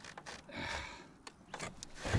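Handling noises while a hooked bass is taken out of a landing net: a short rustle about halfway through and a few light clicks and taps near the end.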